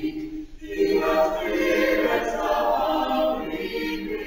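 Church choir singing, with a brief break for breath about half a second in and then fuller, louder singing.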